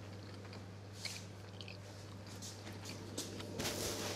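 A person chewing a mouthful of pasta, soft and faint, over a steady low hum, with a brief rustle near the end.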